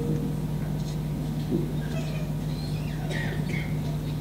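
A steady low hum runs under a pause in the play, with a few faint, short high chirps about two to three and a half seconds in.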